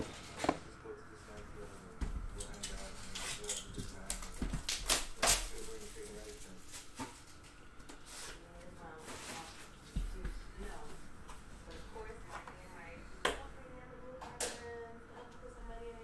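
Hands opening a cardboard trading-card box and sliding out a card in a clear plastic holder: rubbing and rustling with scattered sharp clicks, several of them a few seconds apart.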